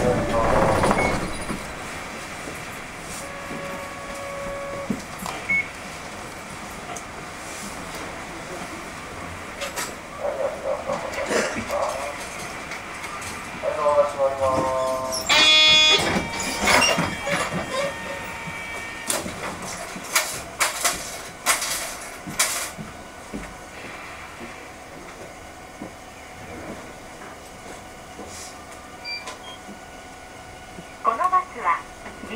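Inside a 1992 Nissan Diesel UA city bus standing still: the diesel engine runs steadily at idle under brief voices, with a short electronic tone about halfway through followed by a string of sharp clicks and knocks.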